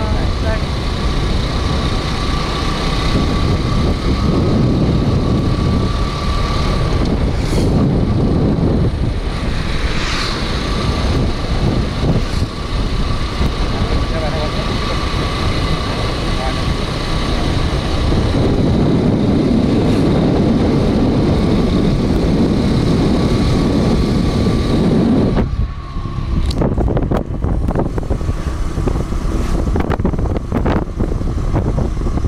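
Riding on a motorcycle: wind rushing over the microphone mixed with the engine running steadily. Near the end the rumble drops and the wind noise turns gusty and uneven.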